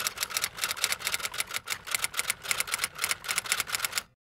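Typewriter key-clacking sound effect, a quick irregular run of sharp clicks about eight to ten a second, cutting off suddenly near the end.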